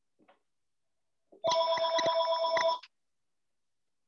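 A telephone ringing once for about a second and a half, a rapid warbling ring made of several steady tones.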